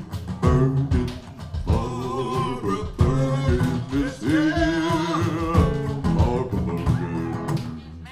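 Small acoustic band playing a short march-like Old West theme: strummed acoustic guitars and a lap-played slide guitar, with singing. It winds down near the end.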